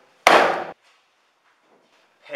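A single loud slam onto a wooden desk about a quarter second in, dying away within about half a second.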